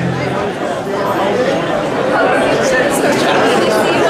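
The band's last sustained bass and guitar notes ring out and stop just after the start, then a club audience chatters, many voices talking at once.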